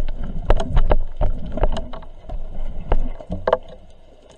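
Underwater sound picked up through a diver's camera: irregular sharp knocks and clicks, several a second, over a low rumble of water movement, fading toward the end.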